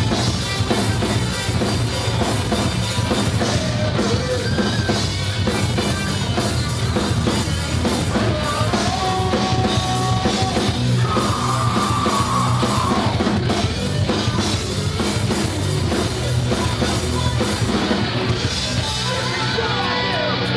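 Live hardcore punk band playing loud: distorted electric guitars, electric bass and a pounding drum kit. A few long held notes ring out around the middle, and a falling pitch slide comes near the end.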